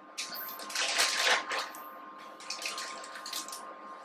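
Wet sloshing and rustling as buttermilk-marinated frog legs are handled with tongs, loudest about a second in, then lighter handling noises.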